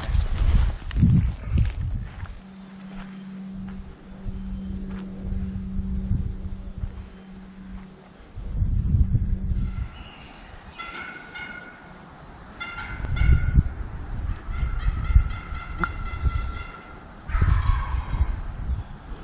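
Turkey calling: runs of short, repeated notes in several bursts through the second half, over rustling and low thumps from movement through brush. A steady low hum runs for several seconds in the first half.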